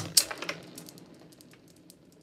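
Glass marbles knocked apart from a tight cluster: one sharp clack just after the start, then a fast spray of small clicks as the marbles strike one another and roll across a hard floor, fading away over about a second and a half.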